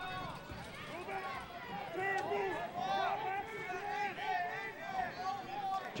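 Distant voices of players and sideline shouting and calling out during live lacrosse play, many short overlapping calls, with a faint click or two.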